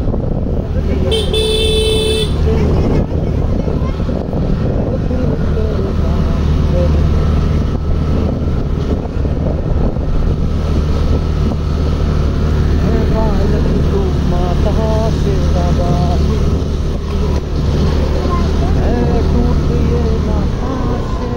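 Motor scooter running along with a steady low rumble, and a horn toot about a second in that lasts about a second. Voices are heard faintly in the background.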